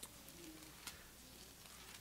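Near silence: room tone with a few faint clicks and a brief faint low tone.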